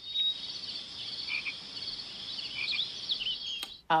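Edited-in night-chorus sound effect of chirping crickets with a few frog calls, used as the comic 'crickets' silence after a rhetorical question. Repeated trains of high chirps with a few short lower calls, cutting off abruptly just before the end.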